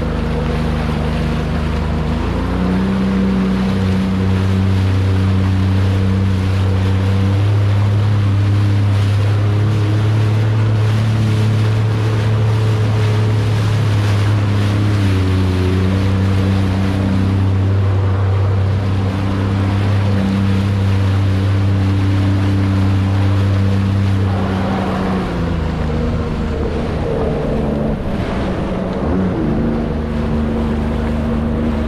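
A Sea-Doo jet ski's engine picks up speed about two seconds in and then runs at a steady cruising pitch, with water rushing past the hull. Near the end the engine note drops and wavers.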